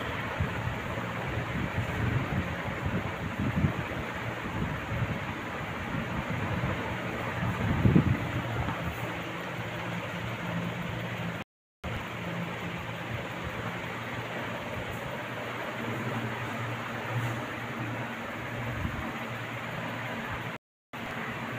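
Steady low mechanical hum with hiss, with a few soft bumps in the first seconds and a louder one about eight seconds in. The sound cuts out for a moment just past the middle.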